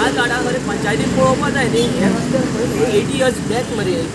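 A man talking loudly and steadily over road traffic noise.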